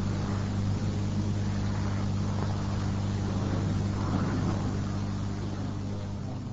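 Steady low electrical hum and hiss of an old cassette-tape recording, with faint, indistinct room noise over it.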